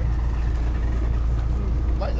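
Fishing boat's engine running steadily, a low rumble.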